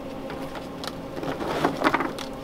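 Oreo cookies being snapped into pieces by gloved hands: a scatter of small crisp cracks, coming thicker and louder about one and a half seconds in. A steady low hum runs underneath.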